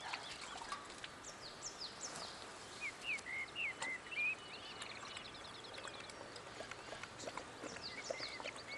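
Faint birdsong: scattered short, high chirps and whistles that glide in pitch, then a quick trill about halfway through, over a light outdoor hiss.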